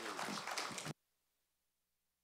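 Congregation applauding with a few voices mixed in, cut off abruptly about a second in, after which there is dead silence.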